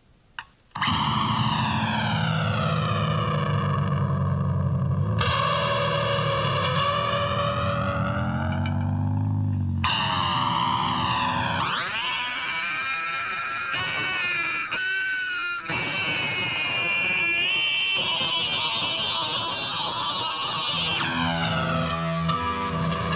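Distorted electric guitar run through a sweeping flanger-like effect, coming in about a second in after a brief silence and a short click. The sound grows busier about halfway through, opening a track on a funk/punk band's demo tape.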